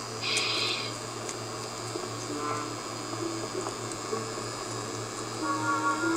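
Cartoon soundtrack played through laptop speakers: quiet, sparse background music with a few held notes over a steady low hum, with a brief hissing burst just after the start.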